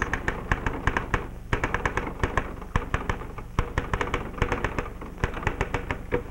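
Manual typewriter being typed on: a quick, irregular run of key strikes, several a second, with a brief pause about a second and a half in.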